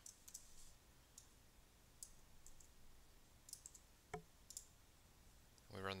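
Faint computer keyboard keystrokes: a few scattered clicks at irregular intervals, the loudest about four seconds in.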